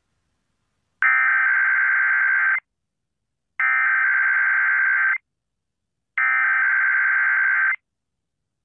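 Emergency Alert System SAME header: three identical bursts of digital data tones, each about a second and a half long with about a second of silence between. It is the coded header that opens the alert, here a Required Weekly Test.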